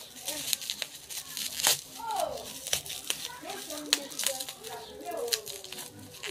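Packaging crinkling and tearing as a small parcel is pulled open by hand, in a run of short rustles and rips.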